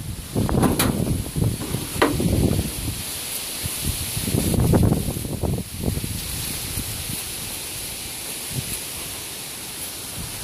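Wind buffeting the microphone in irregular gusts, with rustling; the gusts die down about six seconds in, leaving a faint steady hiss.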